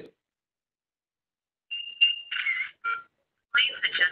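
A ZKTeco SpeedFace face-recognition temperature reader's small speaker gives a steady beep about two seconds in, then a few short, tinny electronic tones. This is the reader verifying a face and then flagging a temperature above its threshold, denying access.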